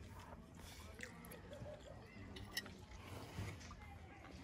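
Faint chewing of a mouthful of rice and chicken, with a few small clicks.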